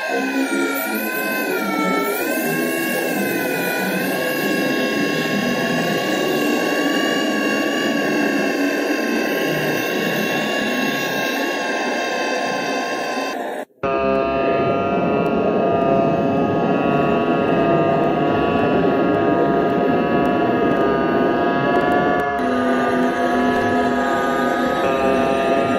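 Sustained drone soundtrack: a stack of steady tones over a noisy, rumbling bed, wavering in pitch for the first few seconds and then holding. It cuts off abruptly about 14 s in, and a different sustained drone takes over, shifting again near the end.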